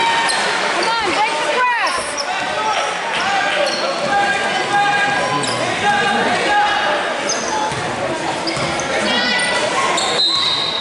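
Basketball game in a gym: a ball bouncing on the hardwood floor, sneakers squeaking in short chirps, and spectators' voices throughout.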